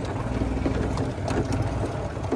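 Golf cart driving over a bumpy dirt lot: a steady low rumble from its motor and tyres, with a few light rattles.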